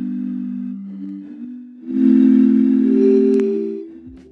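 A sampled bottle note, pitched up and down across a keyboard by speeding or slowing the recording, played as sustained chords. One chord is held and fades about a second in. A louder chord starts at about two seconds, adds a higher note, and dies away near the end.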